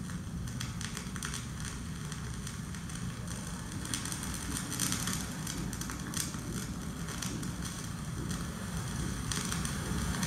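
Sporadic soft crackling, with a few sharper crackles around the middle, over a steady low rumble. This is a video installation's soundtrack played back in a gallery room.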